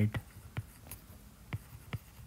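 Stylus tip tapping and ticking on a tablet's glass screen while a word is handwritten: a few faint, sharp ticks spaced irregularly.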